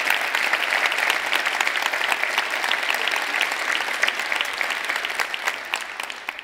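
Audience applauding, a dense patter of many hands clapping that begins to thin out near the end.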